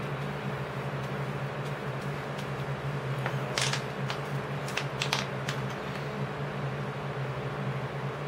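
Steady low background hum, with a handful of sharp clicks and crackles around the middle as a plastic water bottle is handled over a paper plate of acrylic paint.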